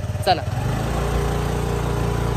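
A small motorbike engine running, growing louder about half a second in as the bike sets off, then holding a steady drone.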